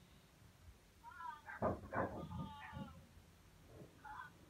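A dog whining and yowling in a short run of high, wavering cries that starts about a second in, with two louder cries near the middle.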